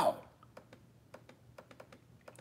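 Laptop keys being pressed: a run of faint, light clicks, about five a second.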